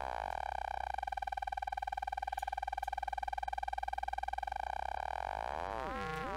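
A synthesized tone-wheel organ note from Bitwig Studio's Organ device, held while an LFO modulates the tone wheel. The LFO is turned down from audio rate, so the note settles into a single steady tone with a rapid flutter. Near the end the LFO is sped up again and the note splits into sweeping metallic side tones.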